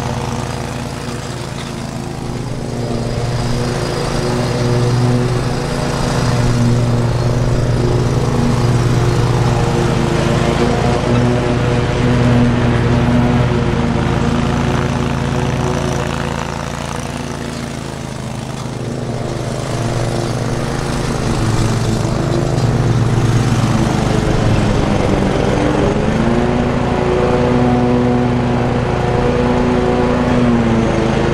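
Hustler zero-turn riding mower's engine running while mowing. The engine grows louder and quieter as the mower moves about, and its pitch sags briefly and picks back up near the end.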